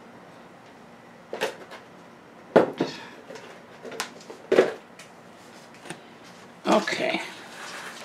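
Pots and containers being handled and set down on a tabletop: four short knocks spread through the first five seconds, then a longer scraping rustle near the end.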